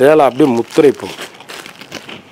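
A voice for about the first second, then the quieter rustle of cotton sarees being handled and smoothed flat by hand on a table.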